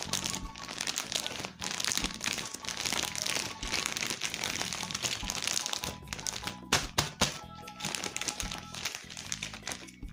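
Thin clear plastic bag crinkling and rustling continuously as hands press and slide it over the dolls inside, with a couple of sharper crackles about seven seconds in. Background music plays underneath.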